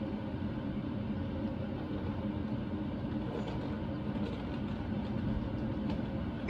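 Steady hum and whir of a stationary JR E657 series electric limited-express train standing at the platform.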